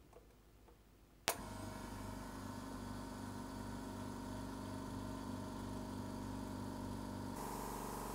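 An air compressor switched on with a sharp click about a second in, then running with a steady, evenly pulsing hum and a faint hiss as it pressurises a laser engraver's air-assist line for a leak test. The low hum drops away shortly before the end.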